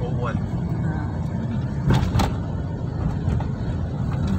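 Steady low rumble of a moving car heard from inside the cabin: engine and tyre road noise. About two seconds in come two brief sharp knocks a fraction of a second apart.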